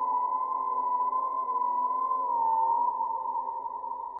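An eerie held electronic tone in creepy background music: one high steady note with a slight waver in pitch, over a faint lower drone, fading a little near the end.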